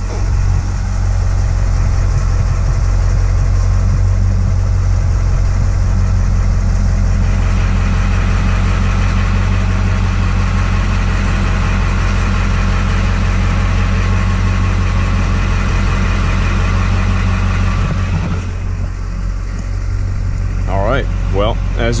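A 2002 LB7 Duramax 6.6-litre V8 turbodiesel idles steadily, driving a PSC high-output power steering pump. From about seven seconds in until about eighteen seconds, a higher whining hiss rises over the idle as the front wheels are steered with the brakes held on. The pump keeps up its assist under that load.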